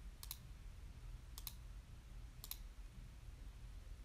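Faint, sharp double clicks, three of them about a second apart, over a low steady hum.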